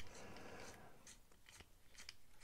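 Near silence with a few faint ticks from a small screwdriver turning a pocket-clip screw into a folding knife's handle.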